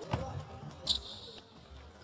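A basketball bouncing a few times on an indoor hardwood court, dribbled by a player.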